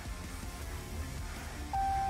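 Low idle rumble of a RAM 1500's 5.7 HEMI V8 heard inside the cab. Near the end a single steady dashboard chime sounds as the ESC system is switched off.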